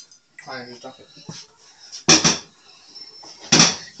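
Cookware clattering twice, short and loud, about a second and a half apart, as drained ground beef is spooned from a frying pan into a pot of chili sauce; a voice speaks faintly before the clatters.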